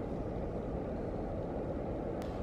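Steady low rumbling background noise with no distinct events: the room tone of a large gallery space.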